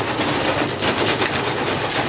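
Loose birdseed rattling in plastic feeder containers as it is poured and handled: a dense, rapid patter of many small hits.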